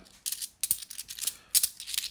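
A handful of 50p coins clinking together as they are shuffled in the palm and gathered into a stack: a series of short, separate metallic clinks with brief quiet gaps between.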